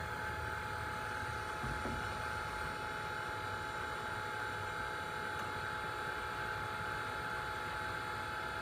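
Steady electric hum with several fixed tones from an electric forklift as it lowers a heavy steel mold onto a wall-braced shelf; there is no creak, crack or thump from the shelf or its brackets.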